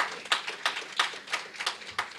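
Audience applauding with separate, distinct claps that thin out near the end.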